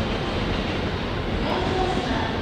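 Steady rumble of train traffic and general station noise, with a faint hum coming in near the end.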